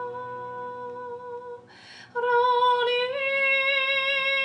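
A woman singing long, held, wordless light-language notes. The first note breaks off about a second and a half in, a breath is drawn, and a new note begins and steps slightly higher about three seconds in, then is held.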